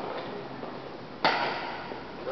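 A single sharp crack of a badminton racket striking the shuttlecock, a little over a second in, ringing on briefly in the echo of a large hall.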